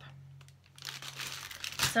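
Crinkling and rustling of the clear plastic packaging on packs of gift tags as they are handled, starting about a second in.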